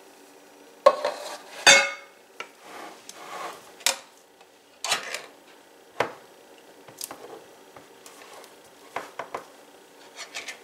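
Spatula scraping thick strawberry pie filling out of a metal can and into a glass baking dish, knocking against the can and the dish. It makes a string of irregular clinks and short scrapes, loudest in the first two seconds.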